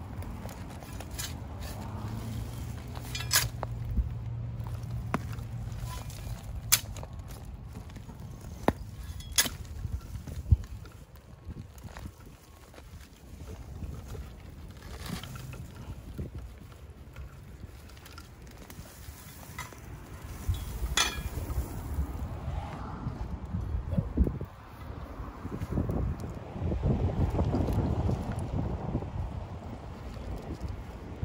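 Hand garden work in a rock-mulched bed: rustling and handling, with a few sharp clicks and knocks of stones and soil over a low rumble of wind on the microphone, the rumble swelling in the last few seconds.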